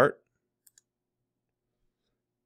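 A faint computer mouse click, a quick double tick about two-thirds of a second in, otherwise near silence.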